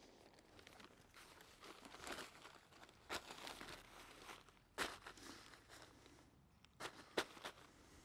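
Black plastic sheeting crinkling faintly as it is handled on the grass and stones are set down on it, with a few short, sharp crackles or knocks about three, five and seven seconds in.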